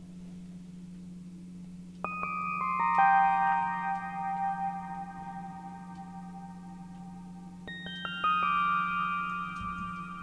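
Dark Zebra HZ synth music: a steady low drone under bell-like synth notes from the Frost preset 'Unspeakable'. About two seconds in, a run of notes enters one after another, each lower than the last, and each rings on. A second, higher descending run follows near eight seconds.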